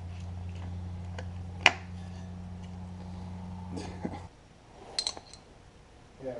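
Sharp clicks and clinks of a screwdriver working at a plastic fuse block and its wire terminals, the loudest about a second and a half in, over a steady low hum that stops about four seconds in.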